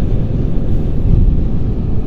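Steady low rumble of a car driving at motorway speed, heard from inside the cabin.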